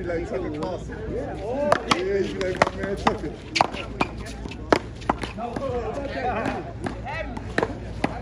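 Paddleball rally: solid paddles striking a rubber ball and the ball smacking off a concrete wall, a run of sharp cracks starting about two seconds in and lasting to about five seconds in, with one more near the end.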